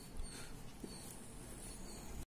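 Faint scratching of a felt-tip pen on paper as short arrows are drawn, a few light strokes over a low steady background rumble.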